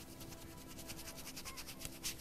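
Stencil brush rubbed in quick small circles over a wooden board, a faint dry scratching of many fast strokes that grows a little stronger near the end. Quiet background music runs underneath.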